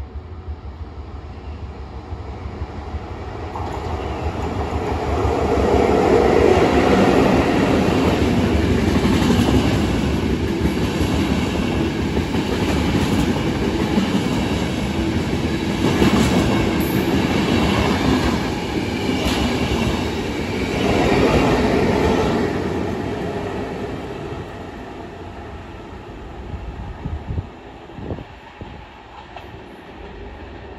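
Intercity passenger train passing through a station at speed: its rumble builds, the coaches roll past with wheels clacking over the rail joints, then it fades away.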